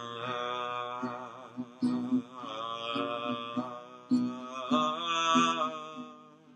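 A man singing long held notes with vibrato, accompanied by a few strums of an acoustic guitar.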